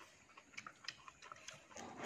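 Faint slurping and chewing of rice noodles, with scattered small clicks of chopsticks and plates; a louder slurp near the end.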